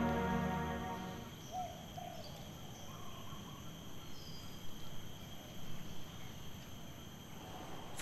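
Background music fading out about a second in, giving way to quiet outdoor ambience: a steady high insect drone with a few faint, brief bird chirps.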